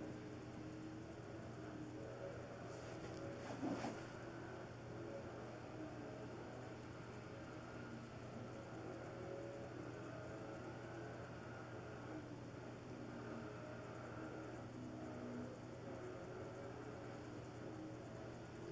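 Quiet room tone: a steady low hum with faint, indistinct background sounds, and a brief faint noise about three and a half seconds in.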